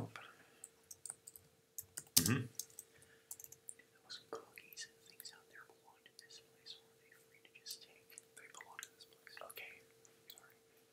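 Computer keyboard typing: a run of light, irregular key clicks, with one louder thump about two seconds in.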